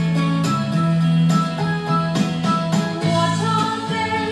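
A children's song playing: a voice singing the melody over instrumental backing with a steady beat.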